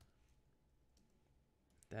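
A few faint, spaced-out computer keyboard keystrokes in near silence.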